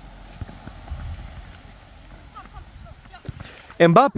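Light knocks of running feet and ball touches on a wet plastic tile futsal court, with a man's voice starting near the end.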